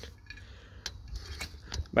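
Faint handling noise as a large glass jar is held and set down on loose ash, with a few light clicks over a low rumble.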